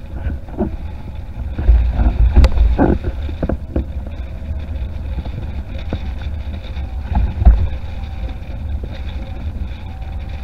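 Wind buffeting the microphone in a steady low rumble over the hiss and spray of a windsurf hydrofoil's mast cutting through choppy water, with a few sharp slaps and knocks in the first few seconds and another loud gust or slap past the middle.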